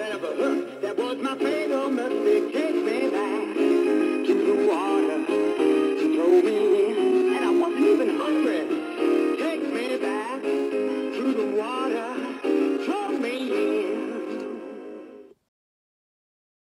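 Louie the Large Mouth Bass animatronic singing fish playing its song through its small built-in speaker: a male voice singing over a jingly backing track, thin with no bass. The song stops abruptly about 15 seconds in.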